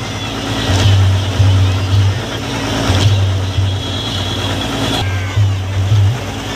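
Loud, distorted music from a public-address loudspeaker, with a heavy bass beat pulsing several times a second, over the din of a large crowd.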